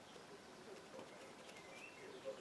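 Near silence: quiet room tone with a few faint short tones.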